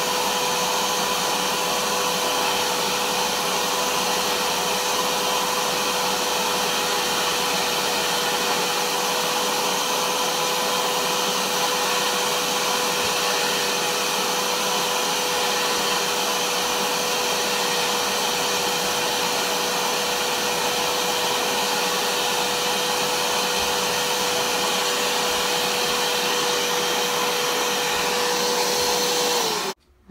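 Hoover Power Max carpet cleaner's suction motor running steadily, with a high steady whine, as its clear hand extraction tool is drawn over a rug pulling out water and dirt. It cuts off suddenly just before the end.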